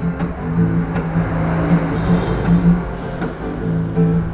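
Acoustic guitar strummed in a run of steady downstrokes on chords, with a thick, noisy wash of strumming in the middle.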